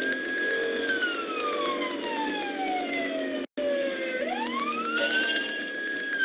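Police car siren on a slow wail, falling slowly in pitch and then rising again to hold high. The audio cuts out very briefly midway.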